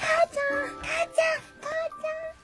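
A baby's high-pitched babbling: a string of short squealing vocal calls, over soft background music.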